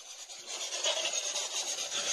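Scratchy rubbing noise starting about half a second in and running fairly evenly with small flutters: handling noise from the handheld camera as it is carried.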